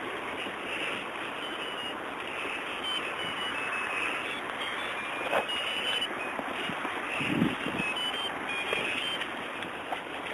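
Steady rushing wind noise on the camera microphone, with short high chirps scattered over it and a couple of low thumps near the end.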